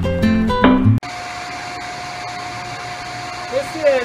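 Acoustic guitar music ends abruptly about a second in. Then a coal forge is running: a steady rush of its air blast through the fire, with a steady hum.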